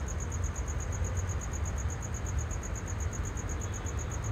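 A cricket chirping steadily, a high-pitched even pulse of about eight chirps a second, over a low rumble.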